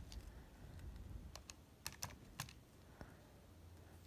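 Light clicks of a Casio scientific calculator's keys being pressed one after another, about eight taps at uneven intervals over the first three seconds, as a calculation is keyed in.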